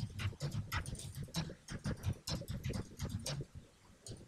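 Computer keyboard typing: quick, irregular keystrokes, about five a second, easing off near the end.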